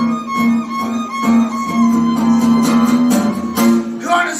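Fiddle and acoustic guitar playing live together in an instrumental passage: the fiddle's bowed melody carries long held notes over the guitar's strummed chords.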